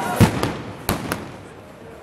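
Four sharp bangs within about a second, the first the loudest, then a quieter stretch.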